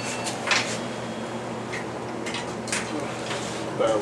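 Steady low hum of a hydraulic elevator car starting to travel upward, with a few soft clicks and knocks.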